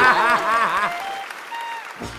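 Studio audience and hosts applauding, with laughter in the first second, dying away over the two seconds.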